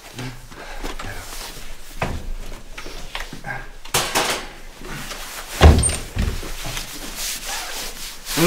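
Rustling and light knocks of a backpack and bags being taken off and handled, with one loud, heavy thump about five and a half seconds in and a softer one just after.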